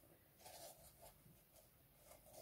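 Near silence: room tone with a few faint handling sounds as fabric is moved.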